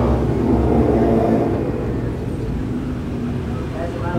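Steady low rumble of background noise, a little louder in the first second or two, with a faint indistinct murmur.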